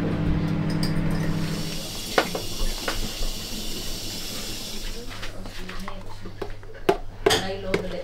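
Kitchen utensils and containers clinking and tapping on a counter, a few sharp taps around two and three seconds in and a quick cluster near the end, over a faint steady hum.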